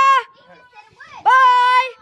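A high-pitched voice giving long, even-pitched cries, twice, a little over a second apart.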